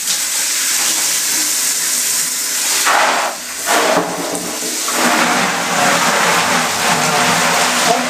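Handheld shower head spraying warm water onto a silkscreen in a tub, a steady hiss of spray that dips briefly about three and a half seconds in. This is the washout of the diazo photo emulsion, where the unexposed parts of the stencil rinse out of the mesh.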